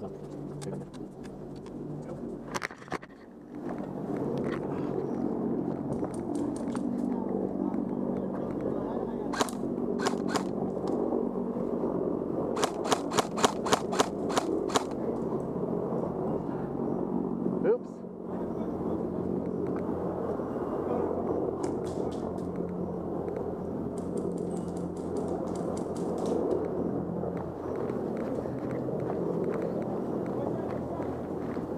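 Airsoft guns firing sharp single cracks: one a few seconds in, two more a little later, then a quick string of about nine shots, about four a second, about halfway through. A steady background noise runs underneath.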